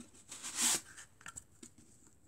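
Cardboard rubbing on cardboard as a toilet-paper-roll pump slide is worked along a paper-towel-roll barrel, a short scraping swish about half a second in, followed by a few light taps of handling.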